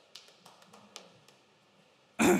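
Near silence, with a few faint taps in the first second from a handheld microphone being handled as it changes hands.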